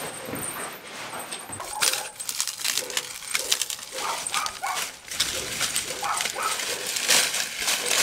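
Dry corn stalks and straw rustling and crackling as they are pulled and gathered from a stack, in a dense run of sharp snaps. A few short animal cries sound behind it.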